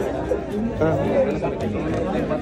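Several people talking at once in a crowded room, with one man's short questioning "¿Ah?" about a second in.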